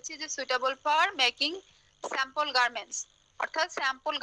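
A person speaking continuously in a lecture over an online video call, with two short pauses and a faint steady high-pitched whine behind the voice.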